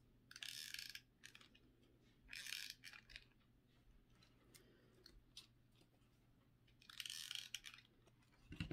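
Stiff glittered ribbon crinkling in the hands as it is handled and pinched during gluing: three short rustles, each about half a second, with faint ticks between.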